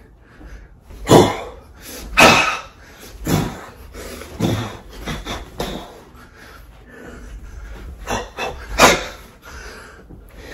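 Sharp, forceful exhalations from a boxer shadowboxing, one with each punch, roughly a second apart through the first half, then a pause, then a few more near the end.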